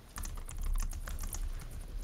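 Typing on a computer keyboard: a quick, irregular run of key clicks over a steady low hum.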